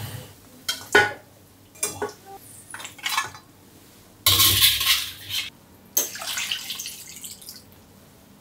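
A metal ladle scooping boiled pig trotters out of a wok into a stainless-steel bowl: scattered clinks and scrapes of metal on metal, then two longer splashing pours of broth, the first about halfway through and the second a couple of seconds later.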